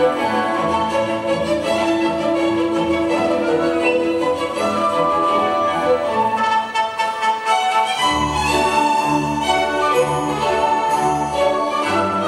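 Orchestral classical ballet music led by violins over cellos, accompanying a solo variation; deeper bass notes come in, in a pulsing pattern, about eight seconds in.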